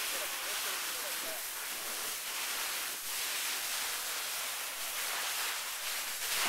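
Steady hiss of snow rubbing against a camera as it slides down a snow slope.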